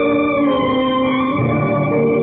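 Background film score of sustained held chords that shift to new notes a few times, heard through an old, narrow-band soundtrack.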